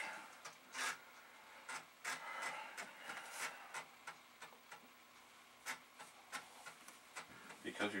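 Amiga 500 internal floppy drive with no disk in it, clicking intermittently as it polls for a disk at the insert-Workbench screen. Short, sharp clicks come irregularly, with a soft rubbing sound between two and three and a half seconds in.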